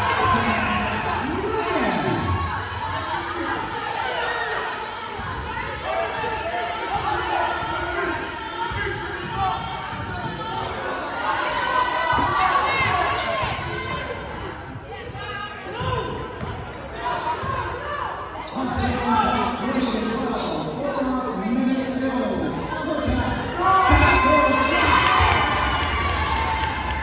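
Basketball game sound in a school gym: a ball being dribbled on the wooden court, with spectators' voices talking and calling out, all echoing in the large hall.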